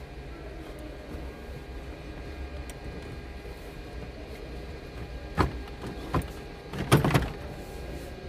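Several sharp knocks and clicks of hands working loose plastic and metal parts inside a stripped car dashboard: one about five seconds in, another a second later, and the loudest cluster near the end, over a steady low hum.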